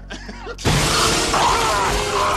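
A brief laugh, then, about two-thirds of a second in, a sudden loud film sound effect of a creature attack: a crash with shattering and a dense wash of noise, with shrill cries sliding up and down over it.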